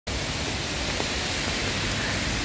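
Steady hiss of rain falling on an umbrella held just above a phone microphone, with a low rumble underneath.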